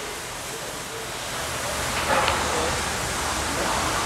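Steady, even hiss of workshop background noise, with faint distant talk about halfway through.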